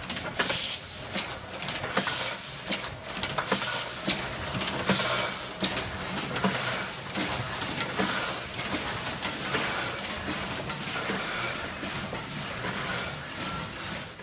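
Letterpress platen printing press running, its mechanism clacking in a steady repeating rhythm of roughly two strokes a second over a continuous mechanical whir.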